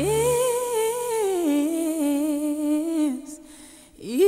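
A woman's solo singing voice, part of a song's soundtrack, holds one long note with vibrato. The note steps down in pitch about a second in, is held, and fades out shortly before the end over faint backing.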